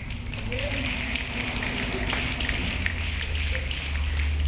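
A small group applauding, a dense patter of hand claps, over a steady low hum.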